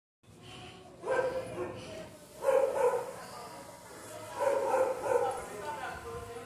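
A small wire-haired dog barking in three short bouts, roughly one and a half to two seconds apart, each bout loud and quickly over.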